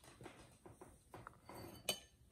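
Faint scraping and light clinks of a metal spoon scooping filling from a plate and pressing it into dough, with one sharper clink near the end.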